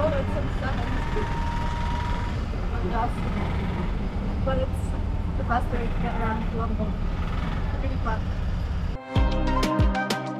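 Auto-rickshaw (tuk-tuk) engine running steadily, heard from inside the passenger cabin, with a vehicle horn sounding briefly about a second in. Music takes over near the end.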